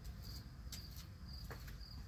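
A cricket chirping faintly and evenly, short high chirps about two or three times a second, over a low outdoor rumble. A couple of faint taps are heard, likely footfalls on the concrete steps.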